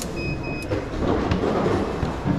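Turnstile gate's card reader giving two short, high-pitched beeps in quick succession as a pass is scanned, just after a sharp click. Steady background noise of a busy hall runs underneath.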